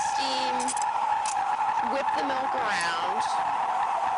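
Espresso machine steam wand steaming milk in a stainless steel pitcher: a steady hiss with a high whine, letting in a little air to foam the milk smooth without large bubbles.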